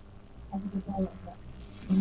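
Faint voices murmuring a few short syllables over a low steady hum, between louder stretches of speech.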